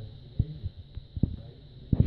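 Low, irregular rumble and thumps on the microphone, with two stronger thuds, one about half a second in and one a little past a second.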